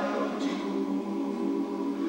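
A large men's barbershop chorus singing a cappella in close harmony, holding full sustained chords, with a brief sung 's' about half a second in.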